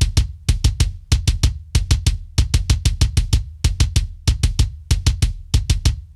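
Raw, unprocessed EZdrummer kick drum sample from the Metal Machines pack, soloed and playing fast double-kick runs with short gaps between them. Every stroke has a deep low end under a super bright, aggressive, crisp click.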